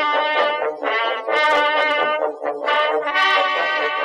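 Instrumental music interlude: a slow melody of held notes, each about half a second to a second long.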